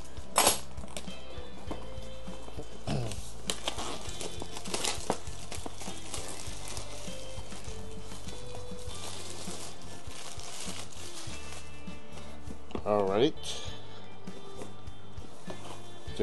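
Clear plastic shrink wrap crinkling and crackling in short bursts as it is peeled off a cardboard box, over a steady background music track. A brief murmur of voice comes near the end.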